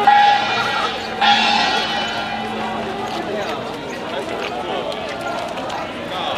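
Marching protest crowd: two loud held calls from voices, one at the start and one about a second in, then a steady mix of many people talking.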